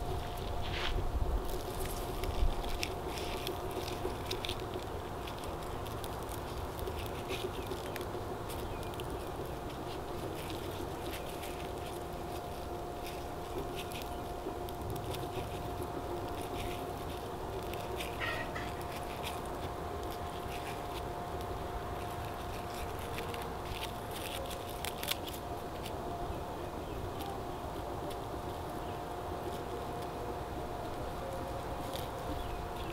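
Wilted lemongrass leaves rustling and crackling in the hands as they are folded and bound into bundles, a scatter of short dry crackles over a steady low hum.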